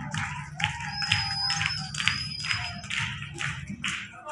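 Dance music with a sharp, steady beat of about three strokes a second and a held high note through the middle.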